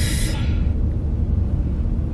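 Steady low rumble of a car's engine and road noise heard inside the cabin as the car moves, with a short hiss in the first half-second that fades out.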